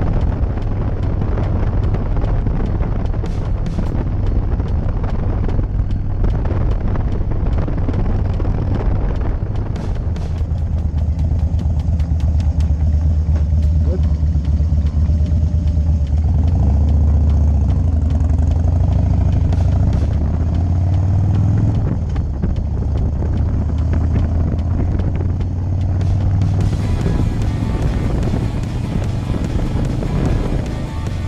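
Harley-Davidson FXDC Dyna's air-cooled V-twin engine running under wind noise while riding, settling to a steady low idle in the middle as the bike stops, then pulling away with the wind hiss rising again near the end.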